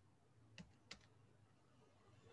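Faint computer keyboard keystrokes: two soft clicks, about half a second and about a second in, as two letters are typed.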